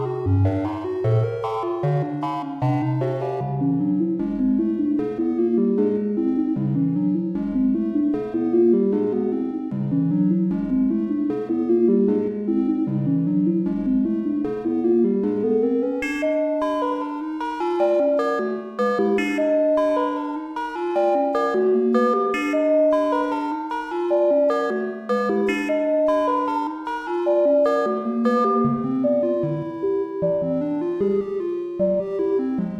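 Three-voice sequenced synthesizer music played by a single Squinky Labs EV3 oscillator module in VCV Rack, each voice monophonic, with plate reverb. The tone turns mellower a few seconds in, then brighter with crisper note attacks from about halfway.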